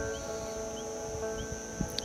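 Crickets chirring steadily, with a faint short chirp repeating about every two-thirds of a second, over soft sustained background music.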